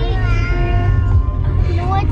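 A high voice singing long, steady held notes that step in pitch a couple of times, over the low rumble of the car cabin.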